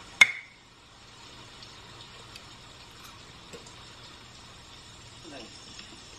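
A metal fork cutting through banana bread strikes a ceramic plate once about a quarter-second in: a single sharp clink with a short ring. A few faint cutlery ticks follow.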